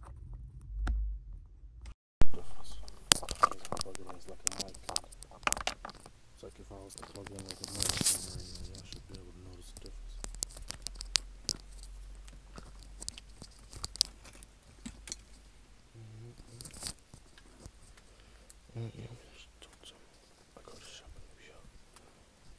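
The phone's audio cuts out for a moment about two seconds in as wired earphones are plugged into it through an adapter. After that the sound comes through the earphones' in-line microphone: close rustling, scraping and clicking of the cable and clothing rubbing against it, with a low muffled voice at times.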